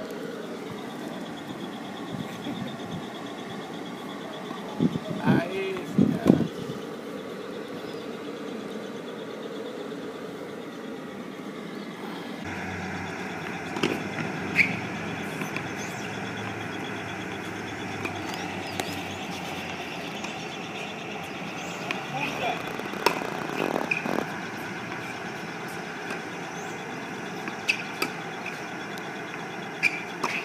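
Outdoor court ambience: a steady background of traffic noise with people talking now and then, and a few short sharp knocks of tennis balls being struck.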